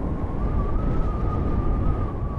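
Electric unicycle's hub motor whining in one steady high tone that rises slightly about a second in and eases back, over low wind rumble on the microphone as it rides along.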